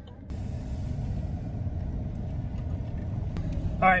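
Steady low rumble of a truck driving, heard from inside the cab.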